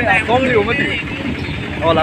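A man's voice over the steady running and road noise of a moving auto truck.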